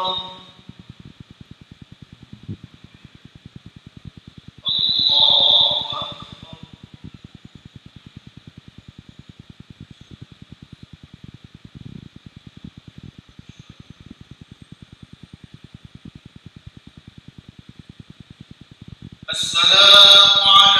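An imam's amplified voice chanting a short call of the prayer, a takbir marking the change of posture, about five seconds in and again just before the end. Between the two calls there is only a faint steady hum with fast, even ticking.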